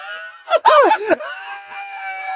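Loud, high-pitched laughter: a few short rising-and-falling yelps, then one long held squeal.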